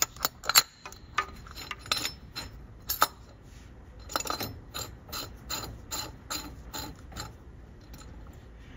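Metal oil filter adapter parts clicking as the spin-on adapter, its threaded extension and lock washer are turned by hand onto an MGB engine block: a run of short, light clicks, about three a second.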